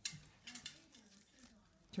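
A few faint, sharp clicks and taps over quiet room sound: the loudest right at the start, a couple more about half a second in.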